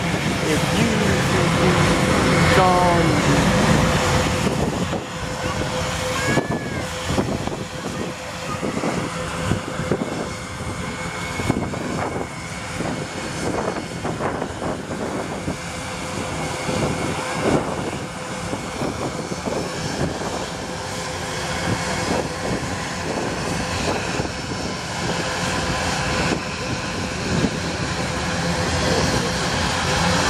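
Aircraft engines running, with a steady whine held at one pitch throughout. Voices are heard over it in the first few seconds.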